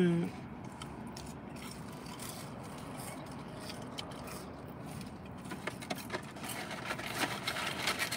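Quiet rustling and crinkling of paper fast-food bags and wrappers being handled, with a few light clicks that come more often near the end.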